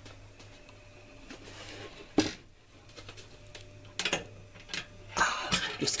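Kitchen handling sounds over a low steady hum: a sharp knock about two seconds in, a few clicks later, and a short clatter near the end as a hand reaches in among the oven and utensils.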